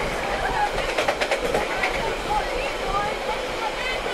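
Passenger train running, heard from on board: a steady rushing noise with a quick run of clicks about a second in, and indistinct voices in the background.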